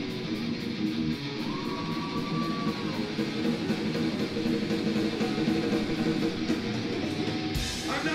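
Live rock band's amplified electric guitars sounding through a club PA, with a held high tone for about a second near two seconds in and a sudden loud hit near the end.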